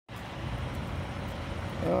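Low, steady outdoor rumble of road traffic, with a man's voice starting to speak near the end.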